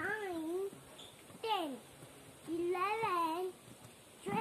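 A young child's high voice calling out numbers in a sing-song way, three calls about a second and a half apart.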